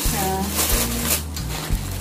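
Plastic packaging rustling and crinkling as a parcel is unwrapped, loudest a little after a second in. A brief voice sound comes near the start, and background music plays underneath.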